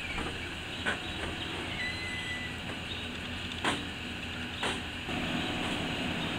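A wooden shop door being pushed open by hand, with a few sharp clicks and knocks and a brief faint squeak, over a steady low background hum.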